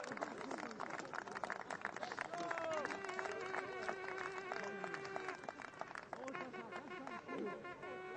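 Small crowd of players and spectators cheering and clapping just after a goal in amateur football, with scattered claps and shouts. A long, steady-pitched held note sounds about three seconds in.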